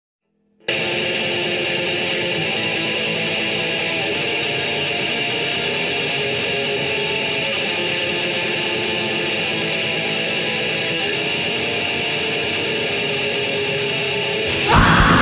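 Distorted electric guitar holding one steady, sustained droning chord, coming in suddenly about half a second in, with no drums.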